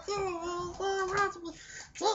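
A man's voice singing a few held notes in a high pitch with no clear words, the notes broken by short breaks and a brief pause near the end.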